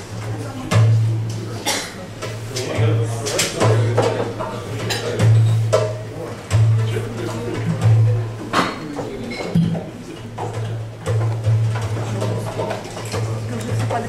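Low background chatter with dishes and glasses clinking and scattered knocks, over a low hum that cuts in and out every second or so.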